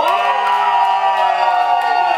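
Small crowd cheering and screaming, several voices holding long high screams: the audience is voting for a dance battle finalist by making noise.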